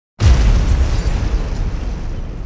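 Cinematic boom impact sound effect for a title reveal: a sudden heavy hit a moment in, followed by a deep rumble that gradually fades.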